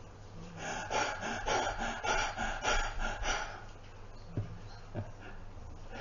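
A man panting in imitation of a thirsty stag: a run of quick, breathy pants, about two a second, that stop after about three and a half seconds, followed by two faint clicks.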